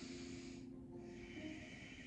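Faint breathing: slow, airy breaths out through the nose, close to the microphone.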